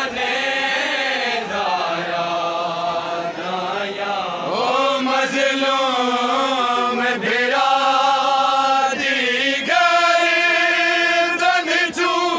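A group of men chanting a noha, a Shia lament, in unison, holding long notes in phrases a few seconds long.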